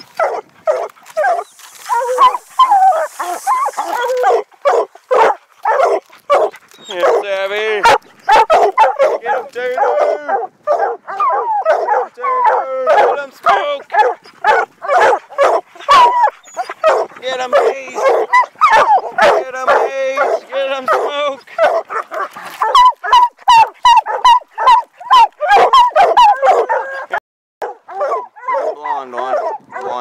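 A pack of hunting hounds barking and baying at a treed bear in rapid, overlapping chops with some longer drawn-out bawls. This is tree barking, the sign that the bear has gone up a tree. The barking breaks off for a moment near the end.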